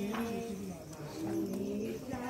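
Low pitched voices, sung and spoken together, with held and gliding notes.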